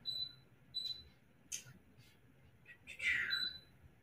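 Control panel of a Lifepro Rumblex vibration plate giving short, high electronic beeps, three in all, as its buttons are pressed to set pulsation mode and speed. A soft breathy sound around three seconds in.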